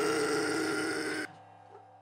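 The last chord of the metal backing track ringing out with a cymbal wash after the drums stop, then cutting off suddenly a little over a second in, leaving a few faint clicks.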